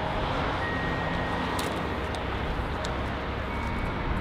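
Steady outdoor background noise, like traffic or wind, with a few faint light clicks.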